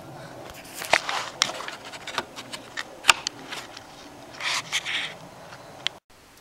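Plastic wire carrier being slid onto its plastic mounting clips: a string of sharp clicks, with a longer scrape about four and a half seconds in.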